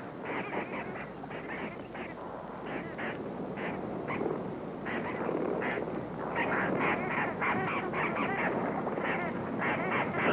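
Ducks quacking on a pond, many short overlapping calls that grow busier and louder about halfway through.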